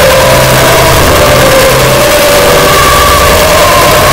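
The 'Yee' meme voice clip layered over itself thousands of times into one loud, steady, distorted wall of noise, with faint wavering tones showing through.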